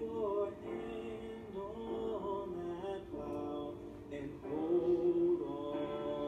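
Men's voices singing a spiritual with sustained, sliding notes, played back from a video through the room's speakers.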